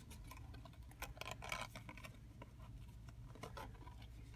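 Faint rustling and light clicks of kraft cardstock being handled as a paper die cut is slid through a slot in a card front, busiest about a second in.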